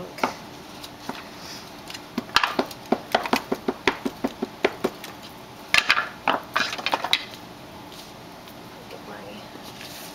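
Clear acrylic stamp block clicking and knocking against the table as a rubber stamp is inked and pressed down. There are quick clicks, several a second, starting a couple of seconds in, then a second cluster of knocks around six to seven seconds.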